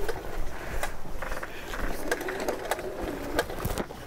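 Hoselink wall-mounted retractable hose reel winding the hose back in, a steady mechanical whirr with rapid fine clicking. A couple of sharper clicks come near the end as the hose finishes winding in.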